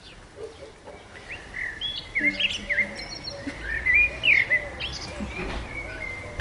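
A bird chirping: a quick run of short rising and falling chirps that starts about a second in and goes on until shortly before the end.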